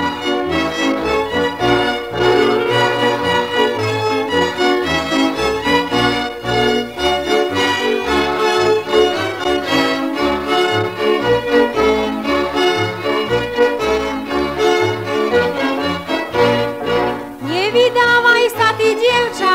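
Instrumental introduction of a Slovak folk song, with melody instruments over a moving bass line; a woman's singing voice comes in at the very end.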